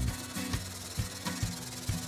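Steel knife blade rubbed back and forth by hand on a flat sheet of sandpaper, giving a continuous gritty scraping. Background music with a regular bass beat plays underneath.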